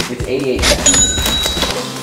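Cash-register "ka-ching" sound effect marking a price reveal: a short clatter about half a second in, then a bright ringing bell tone that lasts just under a second.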